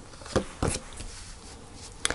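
Tarot card drawn from the deck and laid on a fabric-covered table: two soft taps about a third of a second apart near the start, then only faint handling.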